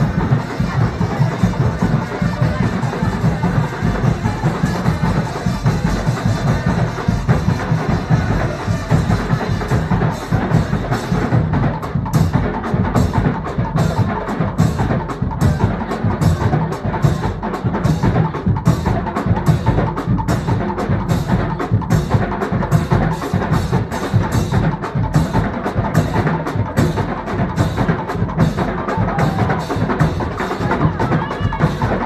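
Live carnival band music: a brass section of trombones and trumpets playing over drums. From about ten seconds in, a percussion group with metal pans and drums keeps a fast, even beat of sharp ticks.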